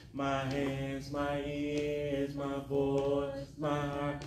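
A man singing a slow gospel solo into a microphone, holding long notes in several short phrases over a sustained backing chord.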